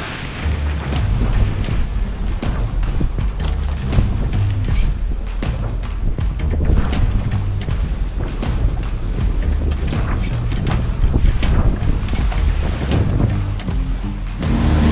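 Background music with a bass line and a steady beat, over wind noise on the microphone.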